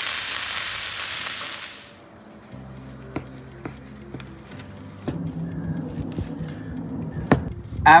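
Seasoned fries sizzling on a hot Blackstone flat-top griddle for about two seconds, then fading out. Soft background music follows, with a few sharp taps of a knife cutting through ribeye onto a plastic cutting board.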